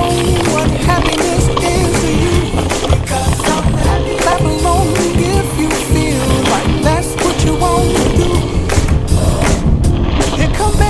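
Hardtail mountain bike rattling down a rough dirt trail: a continuous rumble of tyres on packed dirt and gravel with rapid clatter from the frame and chain over braking bumps. Background music plays over it.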